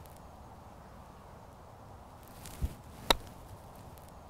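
A golf pitch shot: a faint swish and a soft low thud about two and a half seconds in, then one sharp click of the clubface striking the ball just after three seconds in.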